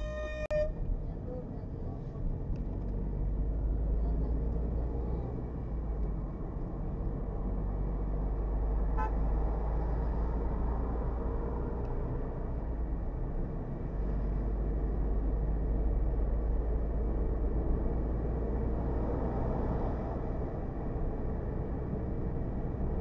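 A car horn sounds briefly at the very start, then steady road and engine rumble of a car driving on a highway, heard from inside the cabin through a dashcam.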